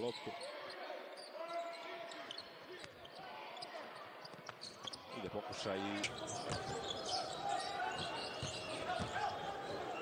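Game sound from a basketball arena: the ball bouncing on the hardwood court, with a murmuring crowd and faint voices.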